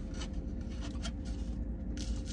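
Soft scratchy crunching and rustling of flaky baklava pastry being handled and bitten, a few faint crackles scattered through, over the steady low hum of the car's heater running.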